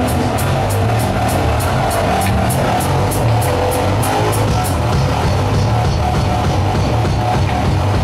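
Heavy metal band playing live: bass guitar and drum kit with full band sound, a cymbal struck about three to four times a second through the first half and then dropping out.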